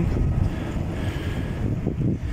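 Wind buffeting a phone microphone: a steady low rumble with no clear events in it.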